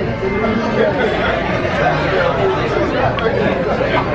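Several people talking at once: busy restaurant chatter.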